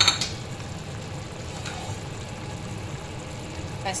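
Chicken liver adobo simmering in its soy sauce braise in a frying pan: a steady, even bubbling sizzle. A short utensil knock sounds right at the start.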